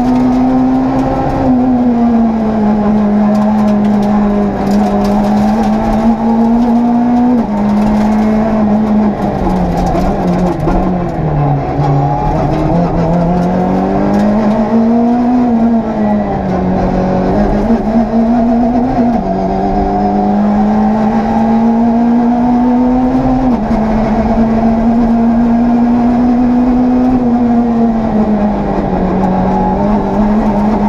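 Citroën C2 R2 rally car's engine heard from inside the cabin, held high in the revs under hard driving. Its pitch drops sharply three times at upshifts. Around the middle it falls away slowly as the car slows, then climbs again.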